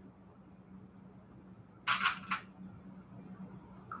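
Hands handling fabric and bias tape, with a short cluster of clicks and rustles about two seconds in, over a steady low hum.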